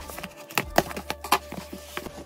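Cardboard box being opened by hand: a run of light knocks, taps and scrapes as the cardboard flaps are pulled open and handled.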